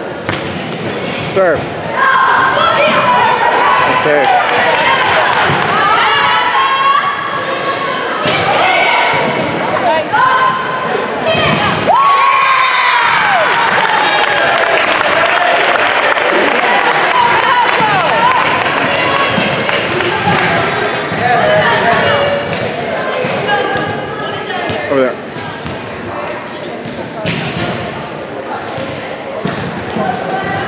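Volleyball rally in a gym: sharp thuds of the ball being served and hit, mixed with continual shouting and cheering from players and spectators.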